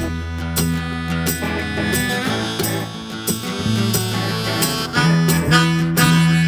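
A folk band playing an instrumental passage: electric guitar over held bass notes, with regular percussion strikes from a tambourine.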